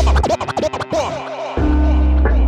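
Vinyl record scratched on a turntable over a hip-hop beat, heard as quick back-and-forth pitch swoops. The beat's bass drops out shortly after the start and comes back about a second and a half in.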